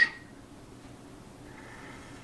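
Quiet room tone: a faint, steady hiss with no distinct event while a UV torch cures resin on the fly.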